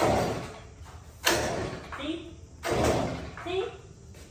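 Pull-cord starter of a small handheld gas yard tool yanked three times, each pull a short burst of noise, roughly a second and a half apart; the engine does not catch.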